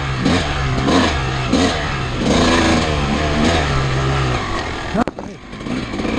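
Vintage dirt bike engine running under throttle on a rough trail, its pitch stepping up and down as the revs change. A sharp knock comes about five seconds in, followed by a brief drop in the engine sound.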